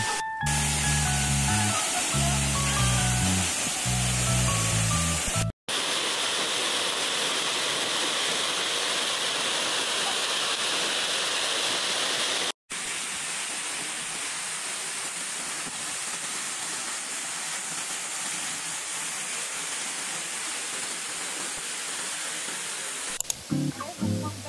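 Waterfall close by: a steady, loud rush of falling water that breaks off for an instant twice. Background music with a beat plays over it for the first five seconds or so and comes back near the end.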